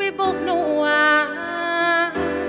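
A woman singing live into a microphone, holding long notes, over instrumental accompaniment.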